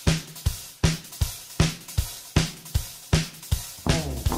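Drum kit playing alone: a fast, steady rock beat of about three hits a second, with kick, snare and hi-hat, as the intro of a song.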